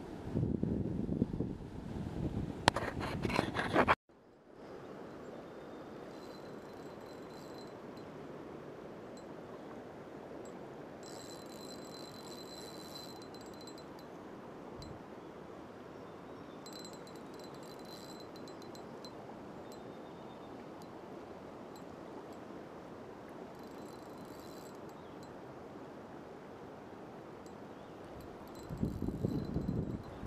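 River current running over a shallow riffle: a steady, even rush of water. A high-pitched ringing comes and goes four or five times over it. The first few seconds hold loud wind and handling noise, which cuts off abruptly.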